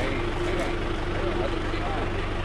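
Tractor engine running steadily at low revs, a constant low drone, with faint voices over it.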